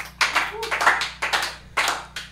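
A small audience clapping and applauding in a small room at the end of a song, with a brief voice mixed in.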